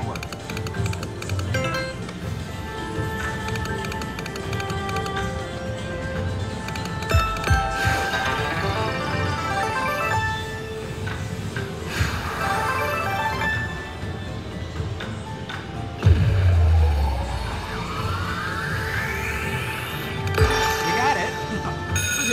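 River Dragons slot machine playing its game music and jingles while the reels spin and a bonus feature animates. Several sharp hits punctuate it, and near the end a rising sweep climbs for about four seconds.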